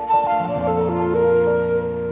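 Bansuri (bamboo flute) playing a slow melodic phrase of held notes that step up and down, over a sustained keyboard chord.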